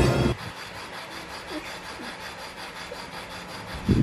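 Background music cuts off abruptly about a third of a second in, leaving a steady low hiss of room noise with a few faint small sounds. Just before the end comes a sudden loud thump.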